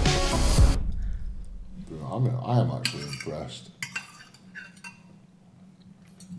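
Background music that cuts off about a second in, followed by a few light clinks and scrapes of a metal knife and fork on a ceramic dinner plate.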